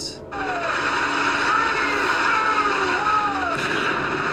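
Steady outdoor street noise, a hiss like wind and traffic, with a few faint wavering tones rising and falling over it; it cuts in about a third of a second in.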